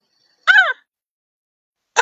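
A woman's short vocal exclamation about half a second in, one voiced call whose pitch rises and then falls.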